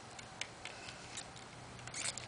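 Faint, irregular small clicks and ticks from a three-wheeled kick scooter's wheels and frame on rough asphalt as it is tipped and balanced, over a steady low hum.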